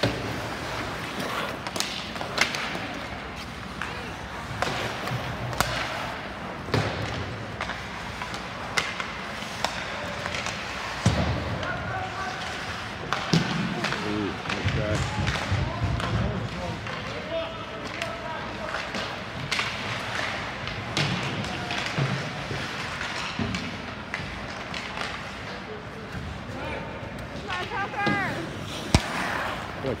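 Ice hockey play in an indoor rink: repeated sharp knocks of sticks and puck against the ice and boards, with people shouting now and then, mostly in the middle and near the end.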